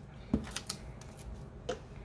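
Paper being handled and pressed onto a cardboard cover with a glue stick: faint rustling with two light knocks, one about a third of a second in and one near the end.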